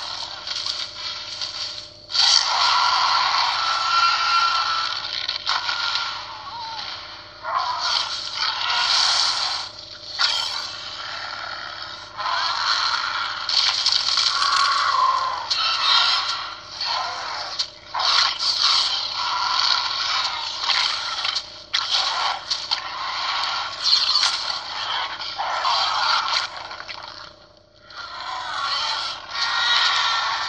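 Film soundtrack of a Spinosaurus and a Tyrannosaurus rex fighting: repeated roars and crashing bursts with short gaps between them. It is played through a television and recorded off the screen, so it sounds thin and tinny, with almost no bass.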